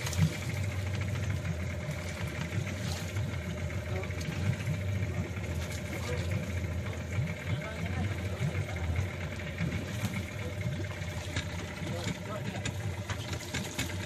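Fishing boat's engine idling steadily, with water splashing and dripping as a wire fish trap is hauled up out of the sea against the hull.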